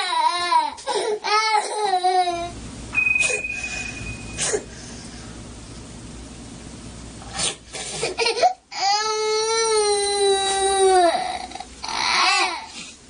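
A toddler crying and fussing as she is being put to bed: short wavering cries at first, then after a quieter stretch one long held wail about nine seconds in.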